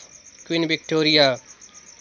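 High-pitched insect chirping, a fast and even pulsing that runs steadily in the background.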